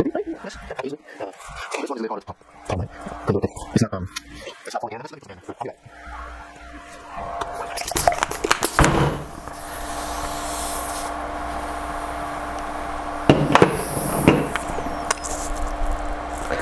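A hand ball pump worked with its needle in a basketball's valve, with irregular knocks and rubbing from handling the pump and balls. From about six seconds in a steady hiss with a faint low hum runs under the strokes.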